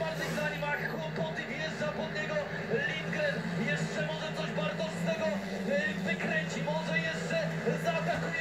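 Television broadcast of a speedway race heard through the TV's speaker: a commentator talking over the steady drone of the racing bikes' engines.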